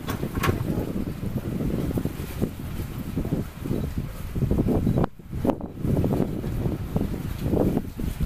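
Wind buffeting the microphone on an open boat: a rough, gusting low rumble that dips away briefly twice about five seconds in.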